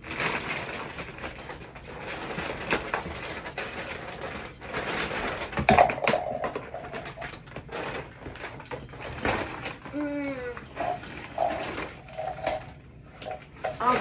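Rummaging through a pile of plastic bags, clothes and clutter: rustling and crinkling with knocks, loudest about six seconds in. About ten seconds in there is a brief pitched sound, followed by a few short tonal blips.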